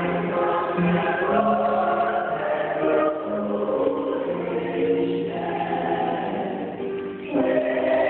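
Mixed church choir singing a slow choral piece in held, overlapping notes, with a brief break between phrases near the end.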